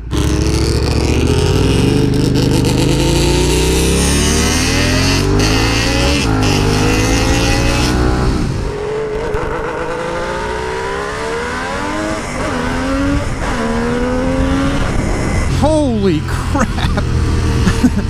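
Kawasaki H2 three-cylinder two-stroke engine of a custom chopper accelerating hard through the gears. Its pitch climbs and drops back at each upshift, over and over. About eight seconds in the sound turns quieter and duller, then builds again through more upshifts.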